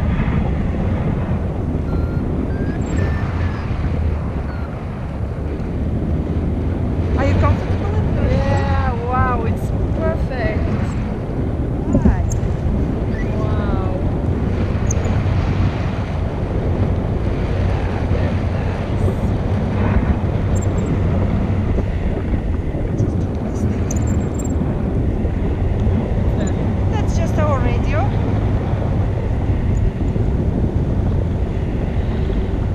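Wind buffeting the microphone of an action camera carried on a tandem paraglider in flight: a loud, steady low rumble.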